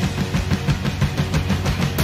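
Drum kit played hard along to a pop-punk/emo backing track: a fast, steady beat of many drum hits over sustained bass notes, with no singing.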